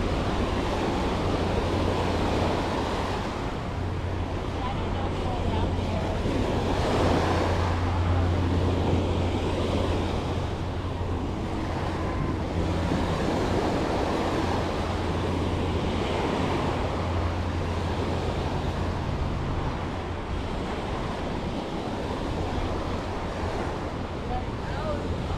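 Small ocean waves washing up onto a sandy beach in a continuous wash that swells and eases every few seconds, with wind rumbling on the microphone underneath.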